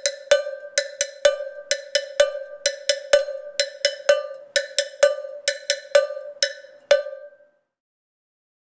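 Cowbell struck with a small stick in a steady rhythmic pattern, about three to four strikes a second, alternating taps on the closed end with strokes on the mouth to get different notes. Each strike rings briefly, and the playing stops about seven seconds in.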